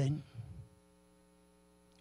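Faint, steady electrical mains hum in a pause after a spoken word fades out in the first half-second.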